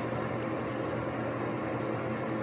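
A steady background hum with an even hiss, unchanging throughout, and no speech.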